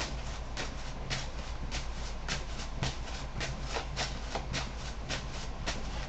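Tarot cards being shuffled by hand: a run of quick, irregular card flicks and slaps, several a second, over a low steady hum.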